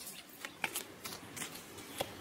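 A few faint, scattered light clicks and rustles over quiet room hiss.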